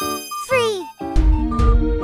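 A bright, sparkling cartoon chime rings as a new character appears, followed by a brief sliding voice-like sound. About a second in, bouncy children's background music with a steady beat starts.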